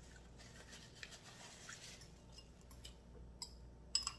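Faint scraping and a few light clicks of a utensil stirring and scooping noodles in a glass bowl.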